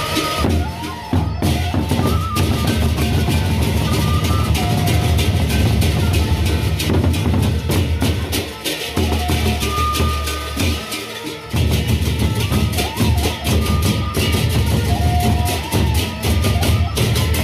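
Gendang beleq ensemble playing: large Sasak barrel drums beaten with sticks in a fast, driving rhythm, with clashing hand cymbals. The deep drumming drops out briefly twice in the second half.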